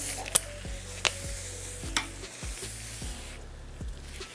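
Hands scrunching styling mousse through damp curly wig hair: a soft, faint handling noise with a few sharp clicks, about a third of a second, a second and two seconds in.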